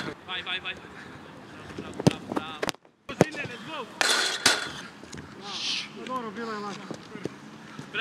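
Laughter and scattered voices on a football training pitch, with a few sharp thuds of a football being struck.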